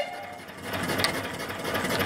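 The antique brass three-chime steam whistle cuts off at the very start. After that, a small steam engine with a flyball governor runs steadily with a quick, even mechanical clatter.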